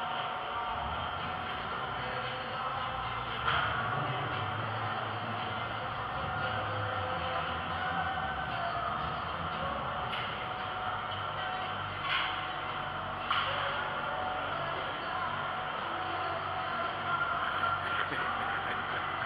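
Steady background noise of a large, busy exhibition hall: distant crowd murmur, broken by four short sharp knocks.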